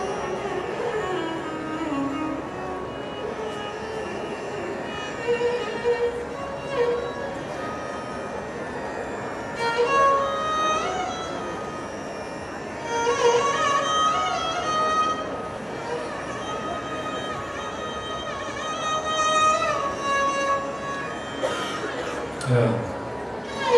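Violin playing a Carnatic melody, sliding and bending between notes, rising to long held higher notes in the second half.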